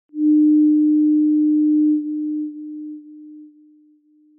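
A single steady electronic pure tone, held loud for about two seconds and then fading away in steps.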